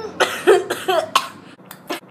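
A young woman coughing several times in short, sharp bursts, her hand over her mouth, after a spoonful of mustard.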